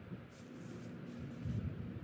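Wind buffeting the microphone outdoors, an uneven low rumble that comes and goes in gusts, with a faint steady hum underneath from about a third of the way in.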